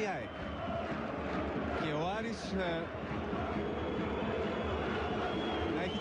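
Steady stadium crowd and ambient noise from a televised football match, with a man commentating in Greek a few times over it.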